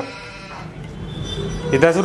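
A pause in dialogue with a low hum and faint background music, then a man starts speaking near the end.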